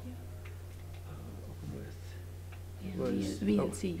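A steady low electrical hum from the sound system, with a few faint clicks from a laptop being operated at the lectern. Quiet talk comes in near the end.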